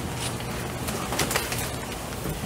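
Rustling and shuffling as a choir stands up and opens music folders, with a few soft clicks and knocks over a low room hum.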